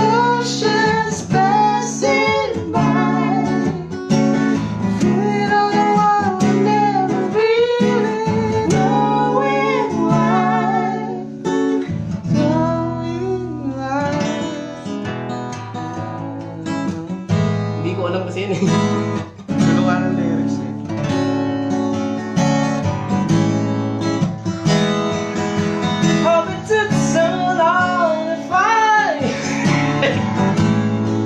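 A Taylor acoustic guitar strummed steadily, with a man's voice singing along over it in wordless runs during the first third and again near the end.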